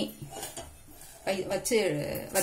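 Stainless-steel pots and vessels clinking lightly as they are handled, with a voice talking in the second half.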